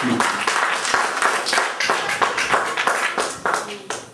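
Congregation applauding: many hands clapping densely, dying away near the end.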